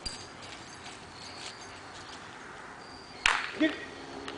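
Quiet yard sound with short, faint high chirps, broken about three seconds in by a sudden loud burst of noise, followed by a man's voice saying "Get it."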